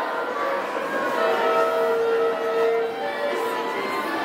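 A wind band's brass and woodwinds playing long held notes at several pitches, with no clear beat.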